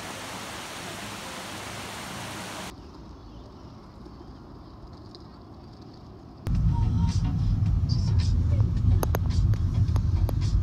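A small creek running over rocks as a steady hiss, cutting to quieter outdoor background hum. Then, more than halfway through, a much louder low rumble of road and engine noise inside a moving car's cabin, with a few faint clicks.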